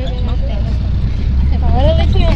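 Low, steady rumble of a passenger van's engine and road noise heard from inside the crowded cabin, growing louder a little past the middle, with passengers' voices calling out near the end.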